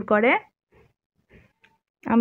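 A woman's voice ending a word on a sharply rising pitch, then a pause of near silence with a few faint soft ticks.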